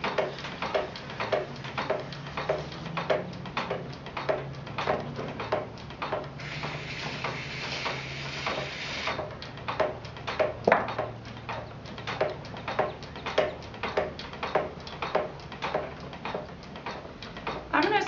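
Leach-style treadle potter's wheel kept spinning by steady foot pumping: a regular clack about two to three times a second over a low steady rumble. A hiss lasts about three seconds midway through.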